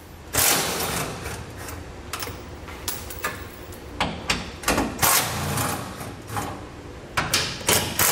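Cordless impact driver with a 12 mm socket hammering out the bolts that hold a truck's charcoal canister. It runs in several short bursts of rapid rattling, the longest at the start.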